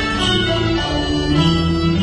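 Cantonese opera instrumental ensemble playing a melody of held notes that step from one pitch to the next, without singing.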